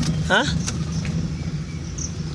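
A car's engine running steadily, heard from inside the cabin as a low, even hum while the car moves slowly in first gear.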